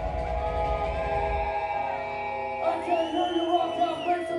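Live metal band holding ringing distorted chords on guitars and bass, with a deep low rumble that drops away about a second and a half in. A high sustained note rises over the chords for the last second or so.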